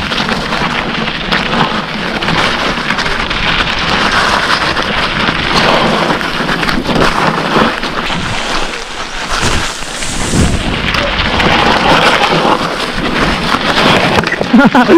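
Mountain bike rolling fast down a loose gravel and stone trail: a continuous rushing crunch of tyres over the stones, with irregular clatter and knocks from the bike over the rough ground.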